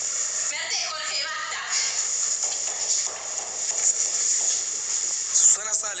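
Voices of amateur radio-drama actors delivering lines in short snatches, about a second in and again near the end, over a steady recording hiss.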